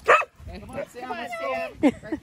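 Dogs barking in play: a sharp bark right at the start and another just before the end, with higher wavering calls between.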